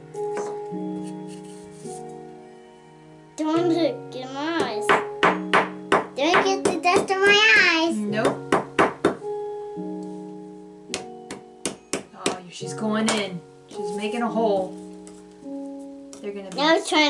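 Background music of held notes, over clusters of quick sharp taps from a small plastic hammer-pick chipping at a plaster dig block, with a voice rising and falling between taps.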